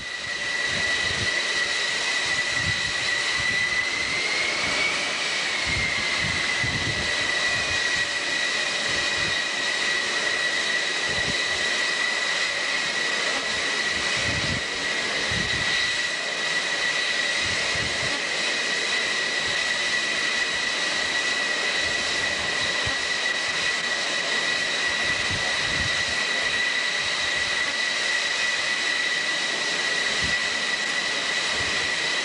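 Jet engines running on an aircraft carrier's flight deck: a steady high-pitched whine over a rush of exhaust noise, the whine rising slightly and settling back about four to five seconds in.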